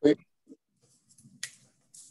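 A voice says 'oui' over a videoconference link, then near quiet with faint low background noise and one sharp click about a second and a half in.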